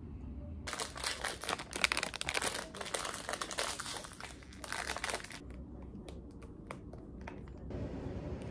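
An ice cream bar's wrapper crinkling as it is torn open and peeled back, a dense crackling for about four and a half seconds, then a few scattered clicks near the end.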